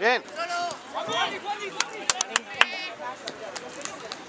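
Shouted encouragement from the sideline of a football match, then a quick run of sharp knocks about two seconds in, over open-air background noise.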